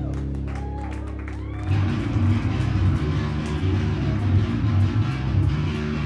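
Live hardcore band: a guitar chord held and ringing out, then about 1.7 s in the full band comes in with a loud, pounding riff over drums.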